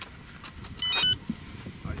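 Turnigy Evolution radio transmitter beeping: a quick run of short electronic tones at changing pitch about a second in, the keypress confirmation as its menu button is pressed to open the setup menu. A low rumble sits underneath.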